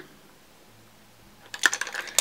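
Near-quiet room tone, then about one and a half seconds in a quick run of small hard clicks and clatters: makeup brushes knocking together in their container as they are handled.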